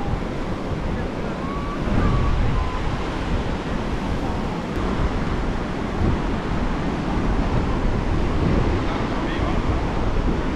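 Ocean surf washing onto the beach, with wind buffeting the microphone in a fluctuating low rumble and faint voices of beachgoers in the background.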